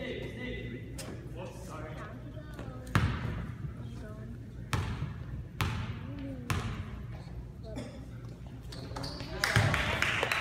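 A basketball bounces on a hardwood gym floor with four sharp bounces about a second apart, ringing in the large hall over a background murmur of voices. Near the end it turns into a louder stretch of mixed court noise.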